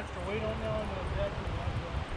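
Steady rush of a shallow stream running over riffles.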